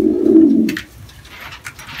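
Domestic pigeon cooing: a low, rolling coo that stops under a second in, followed by a few faint clicks.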